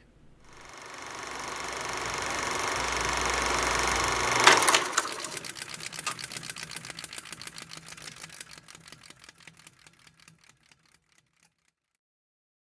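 Outro sound effect: a rush of noise that swells for about four seconds, a sharp hit, then a run of clicks that slow down and fade away over about six seconds.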